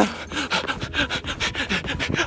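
A person running with a handheld phone: rapid, rhythmic rubbing and scraping of the phone's microphone against hand and clothing, mixed with hard breathing, about six or seven strokes a second.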